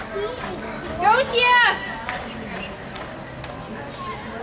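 A person's loud, rising shout, held for about half a second about a second in, over background voices.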